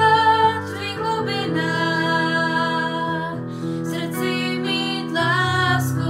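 Slow Czech worship song: a woman singing a melody over acoustic guitar, with held low notes underneath.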